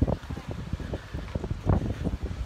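Wind buffeting the camera microphone, a gusty low rumble that surges and drops unevenly.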